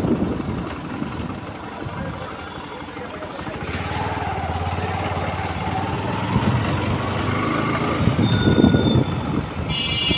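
Motorcycle engine running while riding along, with wind buffeting the microphone at first; from about four seconds in the engine's pitch rises and falls as it speeds up and eases off.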